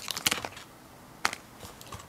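Handling noise: a few quick clicks and taps as small accessories and a zippered carrying case are moved on a wooden desk, with one sharper click just past a second in.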